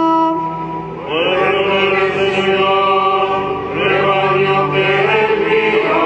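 Slow liturgical chant sung by voices. A single held note ends about half a second in. From about a second in, several voices sing long sustained notes together, moving to a new chord every second or so.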